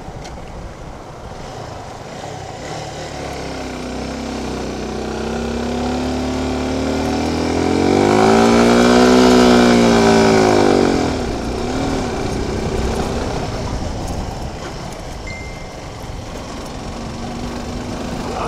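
Suzuki Gixxer SF 250's single-cylinder engine pulling up a steep climb still in third gear, labouring: its revs and loudness build over several seconds, peak about eight to ten seconds in, then fall back as the throttle eases.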